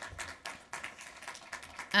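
Quiet room noise with a few faint, light taps.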